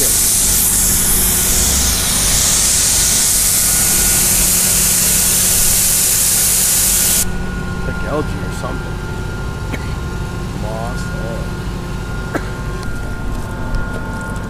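Water spraying in a loud steady hiss while the stone monument is washed, cutting off suddenly about seven seconds in. A steady motor hum runs underneath throughout.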